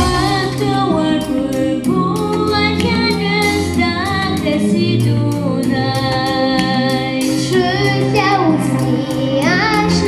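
A child singing a melody into a microphone over amplified instrumental accompaniment with a steady beat.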